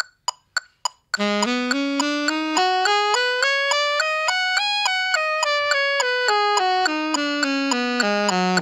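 An electronic metronome clicks a count-in in even eighth notes. About a second in, an alto saxophone starts the F minor blues scale in even eighth notes, climbing two octaves and coming back down, while the metronome keeps clicking.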